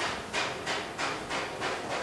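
Marker pen scratching across a whiteboard as a word is written, in a series of short strokes about three a second.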